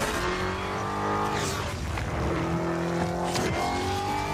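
Dodge Challenger SRT Demon's supercharged V8 running hard, its note sliding slowly down in pitch and then starting again higher, with two brief rushes of noise as the car passes.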